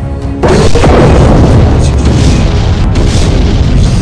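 A loud cinematic boom sound effect hits about half a second in over music, then carries on as a loud, dense blast with a deep low rumble.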